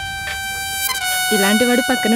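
Film background music: a steady, high held note, joined by a voice about a second and a half in.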